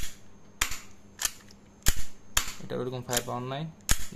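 Sharp metallic clicks from a UDL TTI manual gel-blaster pistol as its action is worked by hand, about six clicks spaced half a second or more apart.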